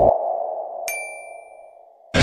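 Edited-in sound effects: a sustained tone that swells at the start and slowly fades, and a single bright ding about a second in that rings for about a second.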